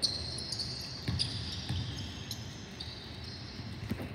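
Basketball being dribbled on a hardwood arena court: a run of bounces about half a second apart, with a thin, steady high-pitched squeal heard alongside.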